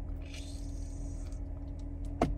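Quiet sips of water drawn through the spout of a plastic sports bottle, a soft hissing draw for about a second, over a steady low hum in a car cabin.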